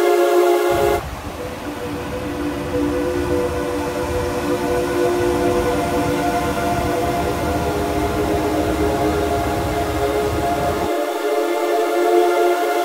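Background music: a sustained, droning chord of held tones. From about a second in until near the end, a low rumbling noise runs underneath it and then cuts off abruptly.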